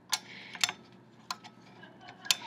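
Hot plate's rotary control knob being turned up to high, giving a few sharp clicks at uneven intervals.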